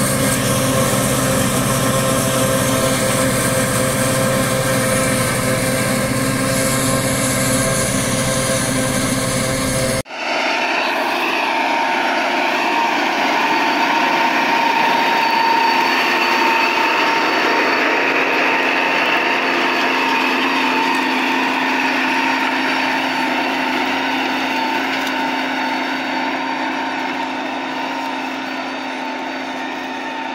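Tractor engine running steadily under load, driving a forage harvester that chops corn for silage. An abrupt cut about ten seconds in gives way to a thinner, higher, steady machine sound of a tractor pulling a disc harrow through dry soil, easing off slightly near the end.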